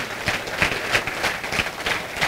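Audience applauding: many hands clapping together in a dense, even patter.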